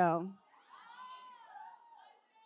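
A spoken word ends at the start. Then a faint, high, drawn-out meow-like call rises and falls over about a second.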